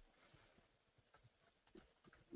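Near silence with a few faint, short clicks of computer keyboard keys being typed, the clearest near the end.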